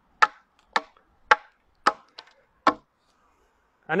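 Hand-forged side axe chopping into an upright split ash bow stave: about six sharp strikes, roughly two a second, stopping near three seconds in. They are short chops lower down the stave to loosen a shaving that has begun to bind against the blade, during rough shaping of the stave.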